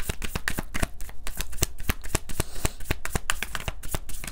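A deck of tarot cards being shuffled by hand: a quick, uneven run of light card clicks and slaps.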